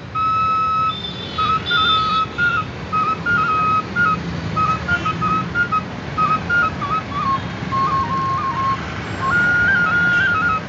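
A small flute held upright, played solo: a melody of short stepping notes, opening on one long held note, dipping lower about seven to nine seconds in, then jumping back up near the end. Street traffic hums underneath.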